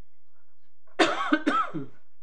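A person coughing: a short run of coughs in quick succession about a second in.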